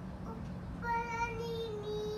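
Young child singing one long held note that steps down slightly in pitch partway through.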